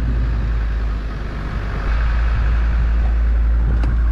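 Land Rover engine heard from inside the cab, running steadily as the vehicle is driven. About a second in, the engine note drops briefly, then picks back up.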